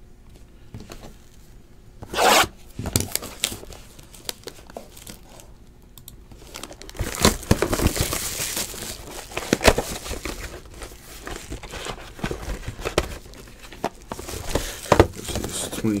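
Plastic shrink wrap being torn off a trading card box and crumpled in the hand. There is a sharp rip about two seconds in, then a long stretch of crinkling and crackling from about the middle onward.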